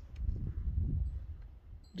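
Wind buffeting the microphone: a low, uneven rumble that swells and then dies down near the end.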